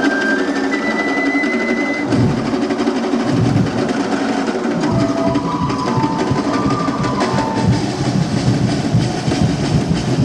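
A drum-and-percussion ensemble playing a fast, driving, even beat for a street dance. A single held high tone rides over it about a second in, and a few shorter tones follow midway.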